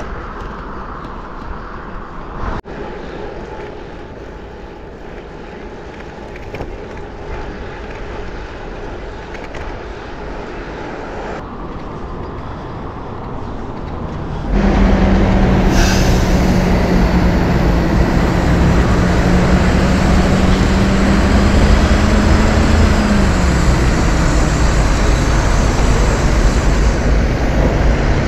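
Steady road noise while cycling, then about halfway through a jump to loud city traffic noise with a steady engine drone close by, which dips in pitch a few seconds before the end.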